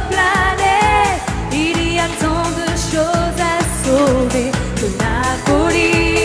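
A female singer performing an upbeat French-language pop song live, over a steady dance beat.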